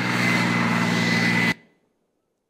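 Military tank engine running steadily, with a thin high whine over it; the sound cuts off suddenly about one and a half seconds in.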